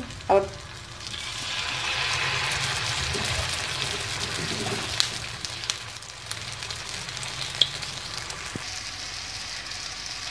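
Batter-coated bread slices sizzling as they shallow-fry in hot oil. The sizzle swells about a second in as a fresh slice goes into the pan, then runs on steadily, with a few light clicks.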